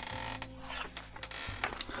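A pen tablet and stylus being picked up and handled on a desk: a few scattered light clicks and knocks, over faint sustained tones from background music.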